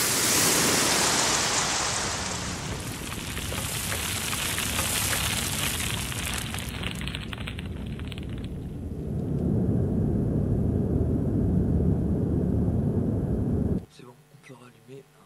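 Soundtrack of a projected video artwork played over loudspeakers: a loud rushing noise of rain with crackling, turning to a low rumble in the second half. It cuts off abruptly just before the end.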